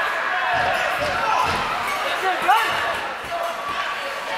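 Ice hockey arena during a stoppage in play: voices and calls echo around the rink, with a few dull thuds.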